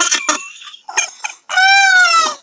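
High-pitched, cartoon-like human voices laughing and squealing in short squeaky bursts. About one and a half seconds in, one long high squeal is held.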